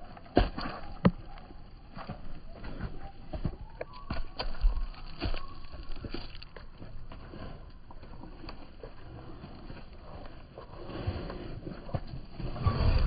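Zwartbles ewes walking past close by, their hooves knocking and thudding irregularly on the ground, a few steps much louder where they pass right next to the microphone.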